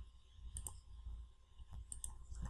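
Faint clicks of a computer mouse's left button: a couple of clicks about half a second in and another near the end, as wire start and end points are picked.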